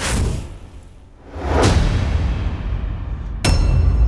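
Dramatic suspense sound-effect cue: a sudden whoosh at the start, a second whoosh about a second and a half in over a deep rumble, then a sharp hit near the end that opens into a sustained low boom with ringing tones.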